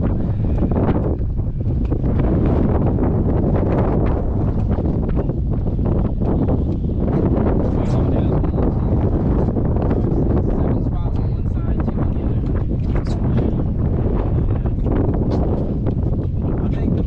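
Wind buffeting the camera microphone: a loud, steady low rumble.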